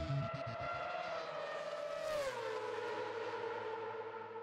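Formula One car passing at high speed: a steady high engine whine that drops sharply in pitch about two seconds in as it goes by, with a brief rush of air at the moment of passing, then runs on at the lower pitch.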